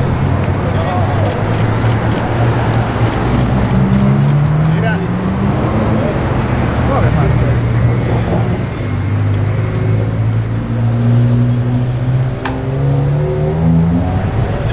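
Bugatti Veyron's quad-turbocharged W16 engine accelerating away, its note rising in pitch through one gear, dropping, then climbing again twice near the end.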